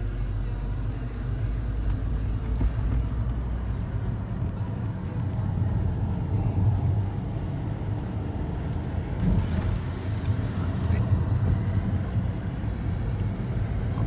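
Steady low engine and road rumble inside the cabin of a lowered Honda Jade driving along.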